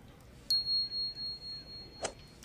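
A single high bell ding, the notification-bell sound effect of a subscribe-button animation. It starts sharply about half a second in and rings on as one pure tone, wavering and fading over about two seconds. A short knock comes at the end.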